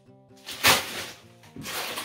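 Plastic bags of frozen strawberries rustling as they are handled, two short crinkles, about two-thirds of a second in and near the end, over soft background music.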